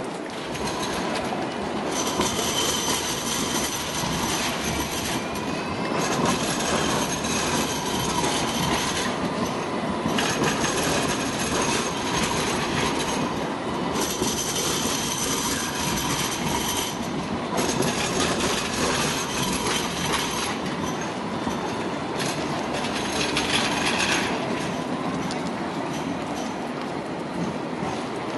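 Light rail tram wheels squealing on the curved track through a street junction: a high, steady squeal that comes and goes in several stretches of a few seconds each, over the rolling rumble of the tram.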